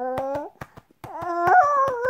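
A baby's long, drawn-out whine of sleepy fussing, which breaks off about half a second in and resumes near the end at a higher, rising pitch. Quick, even pats sound under it, several a second.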